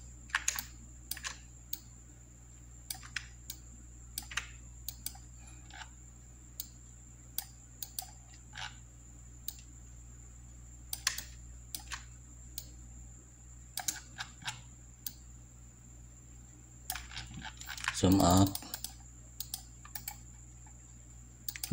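Computer mouse and keyboard clicks, single and irregular, as pen-tool anchor points are placed on a photo in Photoshop. A thin steady high whine and a low hum run underneath. About two seconds before the end there is a brief, louder low vocal noise.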